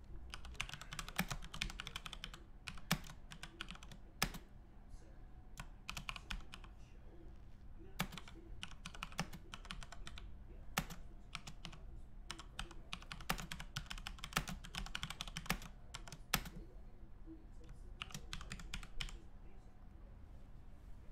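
Typing on a computer keyboard in bursts of rapid key clicks, with a few louder single clicks among them.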